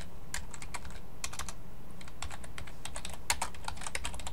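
Typing on a computer keyboard: a quick, irregular run of keystrokes entering a terminal command, with one sharper key press a little over three seconds in, over a steady low hum.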